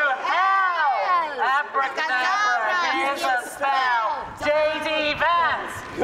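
A person speaking continuously, the words not made out. From about four seconds in, a low rumble of wind on the microphone joins it.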